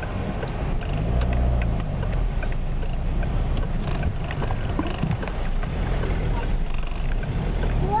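Car engine and road noise heard from inside the cabin while moving slowly in traffic: a steady low rumble, with the engine note rising and falling briefly about a second in.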